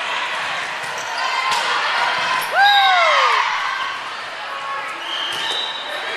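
Sneakers squeaking on an indoor gym court during a volleyball rally. One long, loud squeak that rises and falls in pitch comes just before halfway, and a sharp thud of the ball comes about one and a half seconds in. Voices echo through the hall.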